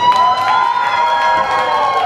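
Live rock band holding one high sustained note for about two seconds, its pitch edging up slightly near the end, while the bass and drums nearly drop out beneath it.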